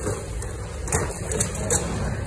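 Goods being handled and rummaged through in a thrift bin: about four short knocks and clatters over a steady low background of store noise.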